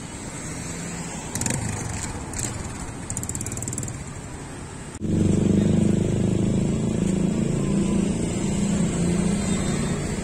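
Street traffic with motorcycle and car engines running. About halfway through, the sound cuts to a louder, steady low engine hum, with a few sharp clicks before it.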